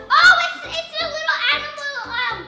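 Young girls' high-pitched excited voices squealing and exclaiming over background music with a steady beat.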